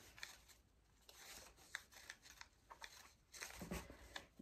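Faint rustling of a wired fabric ribbon being tied into a bow by hand, with a few soft, sharp ticks as it is pulled and handled.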